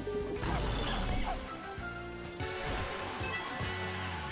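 Online video slot music and sound effects: a crashing hit about half a second in, busy effects after it, and a louder run of big-win celebration sounds from about two and a half seconds in.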